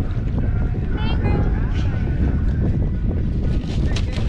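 Wind rumbling steadily on the microphone on an open boat, with a brief faint voice about a second in.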